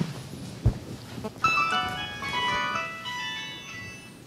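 A short electronic jingle of chiming tones from a device, starting about a second and a half in and fading out after about two seconds, with a dull thump shortly before it.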